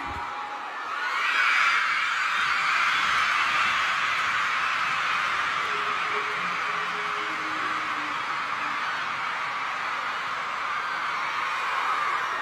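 A large crowd of schoolgirls screaming and cheering together. It swells about a second in and then holds steady.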